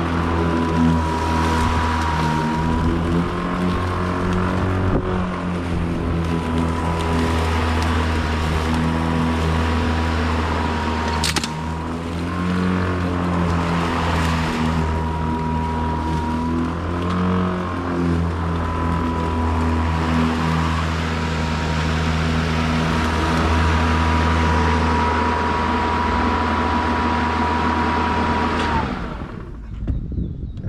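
Toro 60V commercial 21-inch battery mower cutting grass: a steady low blade hum with a thin high electric whine that wavers slightly under load. Near the end the motor is switched off and spins down.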